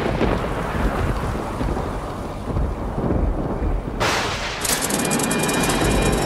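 Thunderstorm: low rolling thunder over rain, with a sudden sharper burst of thunder about four seconds in, followed by a dense patter of rain.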